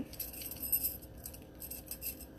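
Metal bangle bracelets jangling and clinking lightly against each other as they are handled and untangled: a scatter of small, high-pitched clinks.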